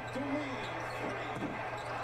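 Faint NBA game broadcast audio: a commentator's voice low under arena crowd noise, with a basketball bouncing on the court.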